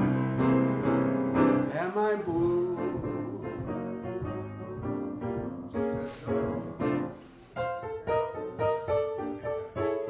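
Piano playing a jazz standard: an instrumental passage of chords and melody notes, with a short lull a little past halfway before the notes resume.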